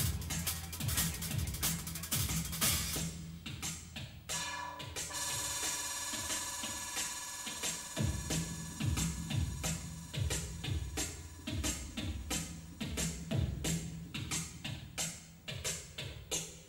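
Live electronic jazz band music driven by two drum kits playing a fast, busy beat over a pulsing low bass. About four seconds in the bass drops away and a held high tone comes in over the drums; the bass returns about halfway through.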